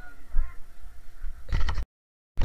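Low rumble of wind and handling noise on a handheld camera microphone, with faint voices at first. A loud burst of noise comes about one and a half seconds in, then the sound cuts off abruptly into silence.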